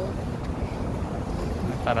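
Wind buffeting a phone's microphone: a steady, low rumble, with a voice starting near the end.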